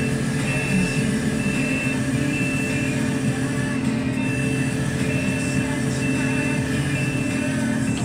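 A crane truck's diesel engine runs steadily under a warning beeper that sounds about once a second in half-second high beeps, pausing briefly near the middle.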